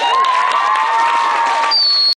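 Audience cheering and shouting, with long held cheers overlapping and some clapping. A shrill steady tone comes in near the end.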